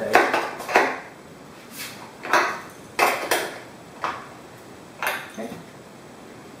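Irregular metal clinks and clicks, about nine in all, from a wrench working the bolts of a homemade aluminium-bar screen-mesh stretcher as the mesh is tightened.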